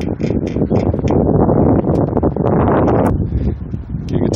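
Gusty wind buffeting the microphone, loud and rumbling, with a few light clicks scattered through it.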